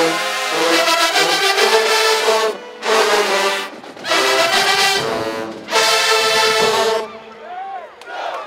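A full marching-band brass section with sousaphones and trumpets plays loud held chords. The chords break off briefly about two and a half, four and five and a half seconds in, and the last chord cuts off about seven seconds in. Faint crowd voices follow the cutoff.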